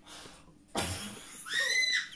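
A sharp, breathy burst a little under a second in, then a high-pitched squealing laugh that rises and falls near the end.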